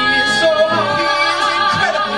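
Live singing of a cabaret show tune: voices hold one long note with vibrato.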